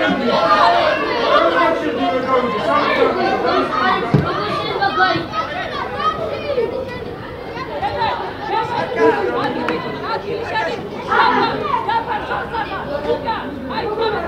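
Speech only: several voices chattering over one another without a break. There is a single dull thump about four seconds in.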